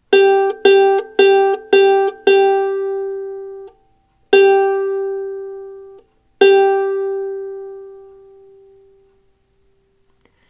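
A ukulele's open G string plucked seven times on the same steady note, the first five in quick succession about two a second, the last ones left to ring and fade, the final one dying away over about three seconds. It is the reference pitch of a standard G-C-E-A tuning, given for tuning the G string by ear.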